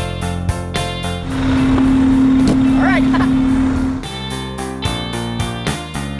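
A fire engine's horn sounds one steady, low, loud blast of about three seconds over the noise of the truck moving off. A short voice exclamation is heard near the end of the blast.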